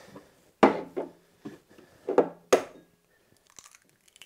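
A few sharp knocks and clicks as a small glass bowl is handled on a wooden bar top and an egg is cracked over it, with a couple of faint ticks near the end.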